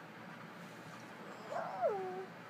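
A dog gives one short whining vocalization about one and a half seconds in. Its pitch rises and then falls, in the 'talking' style of a dog that has been taught to 'say I love you'.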